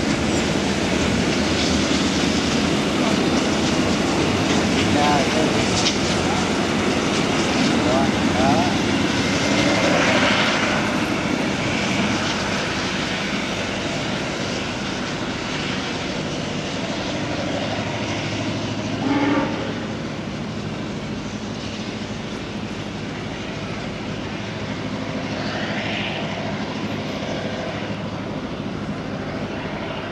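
Railway train running, a steady heavy noise that slowly eases off, with faint voices now and then and a brief louder sound about nineteen seconds in.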